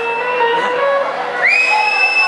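A live band playing. About one and a half seconds in, a high, piercing tone glides up and is held.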